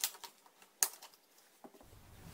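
Plastic snap clips of a laptop's LCD bezel popping loose as it is pried off by hand: a few sharp clicks, the loudest just under a second in.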